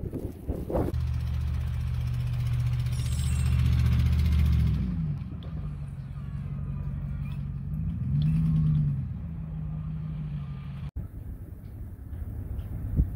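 Truck engine running steadily, with its pitch shifting around five seconds in and rising then falling back again near nine seconds as it is revved. Wind blows on the microphone in the first second.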